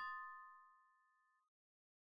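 A single bell-like mallet note from background music, the last of a run of chime notes, struck once and fading away over about a second and a half, followed by complete silence.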